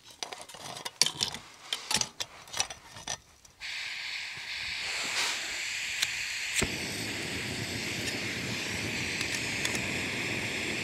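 Clicks and knocks as a gas canister is screwed onto a backpacking stove burner. About a third of the way in, a steady hiss of escaping gas begins. A sharp click follows later, and then a steady low rush joins the hiss as the Jetboil stove's burner is lit and runs.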